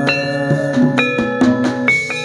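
Gamelan-style jaranan accompaniment music: a steady run of struck, ringing pitched notes over drum strokes.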